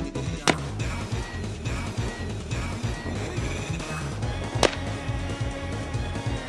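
Two sharp gunshots, one about half a second in and one near the five-second mark, over video-game soundtrack music with a steady beat.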